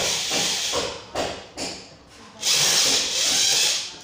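Electric drill-driver running in bursts as it drives screws into the underside of a chair seat: a run of about a second at the start, two short bursts, then a longer run near the end.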